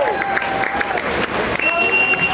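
Concert crowd applauding and cheering, dense clapping with shouting voices over it. A steady, shrill whistle is held for about half a second near the end.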